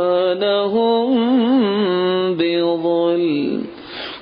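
A man reciting the Quran in Arabic in a melodic, chanted style, holding long notes with wavering ornaments. Near the end the phrase trails off and he draws a breath before going on.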